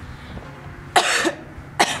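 A woman coughing twice, a longer cough about a second in and a shorter one just before the end; she has been sick.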